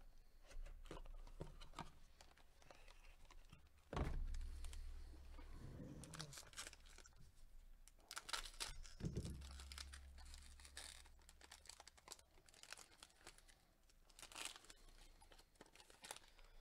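Foil wrapper of a trading-card pack crinkling and tearing as it is ripped open by hand, faint and intermittent. A dull thump about four seconds in, the loudest sound, and another about nine seconds in.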